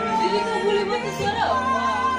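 A man and a woman singing a ballad duet over instrumental backing, holding long notes with a swooping glide about one and a half seconds in.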